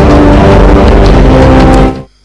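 Loud dramatic film soundtrack: held chord tones over a heavy rumbling noise, cutting off abruptly just before the end.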